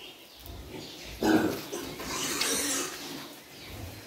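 Young wild boar gilts grunting: a louder grunt about a second in, then lower grunting for about two seconds.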